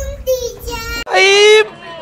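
A high-pitched human voice making two long, drawn-out vocal sounds, the second louder. A low rumble lies under the first and cuts off abruptly about a second in.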